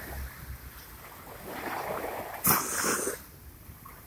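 Small sea waves lapping at the shore, with a sudden louder rush of noise a little past halfway through that lasts about half a second.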